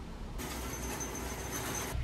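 Faint steady background noise with a low rumble, as heard in a parked car's cabin; about half a second in a thin high whine joins it.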